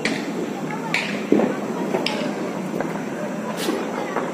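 Background voices and steady outdoor noise, with a few faint sharp pops or clicks.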